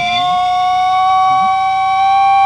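A long, single held tone from a film soundtrack, a comic sound effect, gliding slowly upward in pitch.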